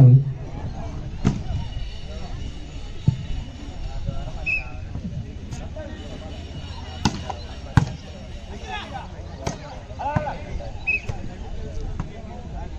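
Hands striking a volleyball in play: several sharp slaps a few seconds apart, the loudest two close together about seven and eight seconds in. Spectators' voices chatter underneath.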